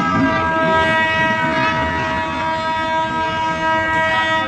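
Locomotive horn sounding one long steady blast, heard from inside a carriage of the moving train, over the low rumble of the train running on the rails.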